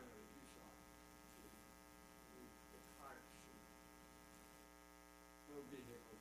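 Near silence: a steady electrical mains hum with its overtones, with faint, distant speech a few times.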